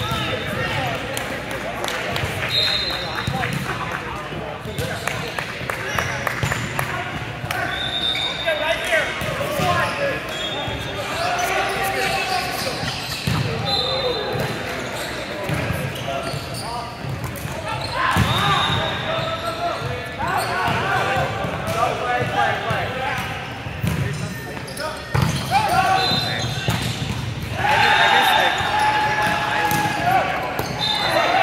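Indoor volleyball game: ball strikes and bounces, sneakers on the court and players' voices calling out, repeated throughout.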